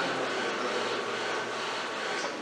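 Steady mechanical hum with a faint whine from a Mitsubishi industrial robot arm moving slowly in its work cell.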